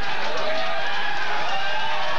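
Studio audience shouting and calling out, many voices at once.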